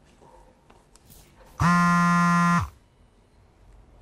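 Mobile phone buzzing as a call comes in: one steady, buzzy tone about a second long, starting about a second and a half in.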